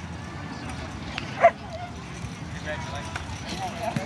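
A dog barks once, short and loud, about a second and a half in, over outdoor background noise and faint voices.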